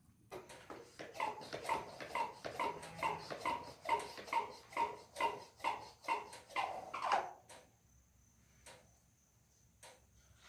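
Hand trigger sprayer on a plastic jug squeezed over and over, about two squeezes a second, each a short squeaky spritz of spray; the squeezing stops about seven seconds in. A thin steady high insect-like tone follows.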